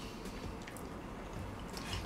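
Faint, sticky eating sounds: natto (fermented soybeans) being chewed and scooped from a small bowl with chopsticks, with a few light clicks.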